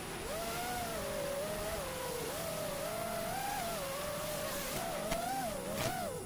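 Small electric motors and propellers of radio-controlled aircraft in flight whining steadily, the pitch wavering up and down with the throttle.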